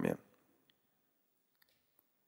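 A man's voice trails off at the very start, then near silence: room tone with a few faint, brief clicks.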